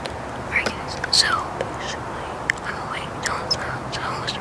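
A person whispering, breathy and without voiced tone, over a steady background hiss, with a few faint clicks.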